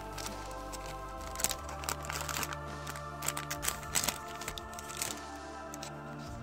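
A foil booster-pack wrapper crinkling and tearing as it is opened, in a run of sharp crackles from about one and a half to five seconds in, over steady background music.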